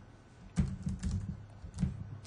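Typing on a computer keyboard: a quick run of keystrokes starting about half a second in, as a name is entered into a search box.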